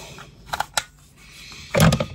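A few light clicks and handling noises from a rotary cutter being handled, then a short, louder sound near the end.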